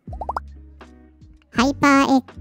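A short sound-effect sting: a quick run of rising 'bloop' tones, then a low tone that fades away. A voice comes in near the end.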